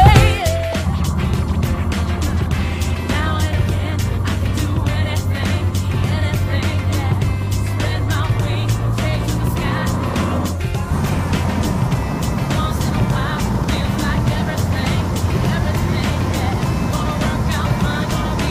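Light propeller aircraft engine running steadily at high power on the takeoff roll, mixed under background music with a steady beat. The sound drops briefly about ten and a half seconds in.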